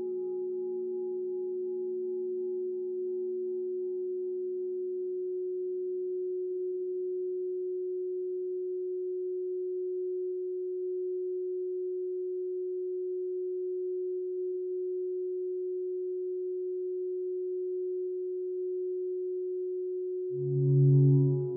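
A steady, pure mid-pitched electronic tone held at an even level throughout. Fainter overtones left over from the sound before it fade out over the first several seconds.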